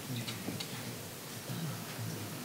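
Quiet room tone with a few light ticks and a faint low murmur.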